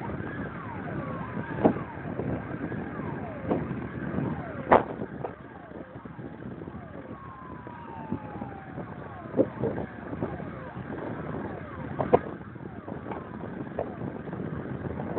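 Sirens of several fire engines heard from a distance, wailing in overlapping slow rising and falling sweeps. A few sharp knocks sound close by.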